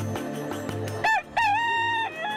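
A rooster crowing over intro music with a steady beat. About a second in it gives a short note, then a long held note.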